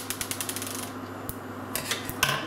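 Steel scissors cutting the end off a plastic semen straw: a quick run of fine clicks in the first second, then a few light knocks near the end as the scissors are laid down on the worktop, over a steady low hum.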